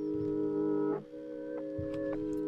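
Stretched-out, reversed melody sample playing back as held, organ-like chord tones, changing to a new chord about a second in, with a higher note joining near the end.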